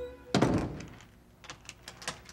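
An apartment door pushed shut with one loud thunk about a third of a second in, followed by a few light clicks at the door's lock.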